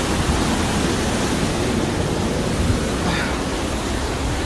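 Steady rushing noise of a waterfall's falling water.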